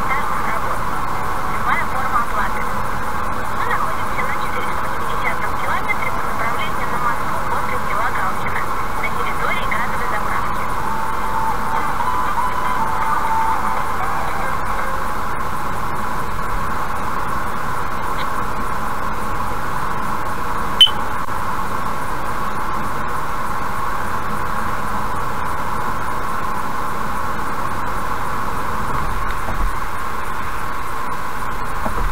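Steady road and engine noise inside a car cruising at about 80 km/h on a highway. One sharp click comes about twenty seconds in.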